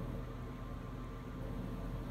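Steady background hiss with a faint low hum; no distinct sound stands out.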